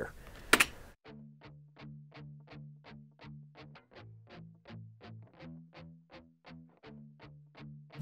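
Electric guitar playing a chugging rhythm of short palm-muted notes, about four a second, starting about a second in. It stays mostly on one low note, drops lower for about a second in the middle, then returns. It plays dry, without the bus compressor plugin.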